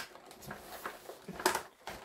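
Light clicks and rustles of small packaging being handled, several short knocks with the loudest about one and a half seconds in.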